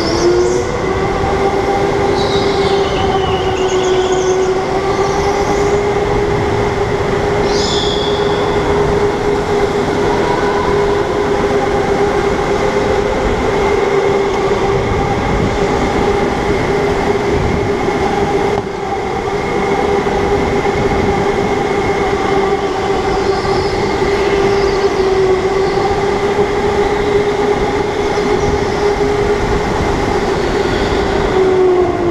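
A go-kart running flat out on an indoor concrete track, heard from on board: a steady, even-pitched motor whine that barely changes and dips briefly about two-thirds of the way through. Short high tyre squeals come through in the corners, a couple of seconds in, again around eight seconds, and faintly later on.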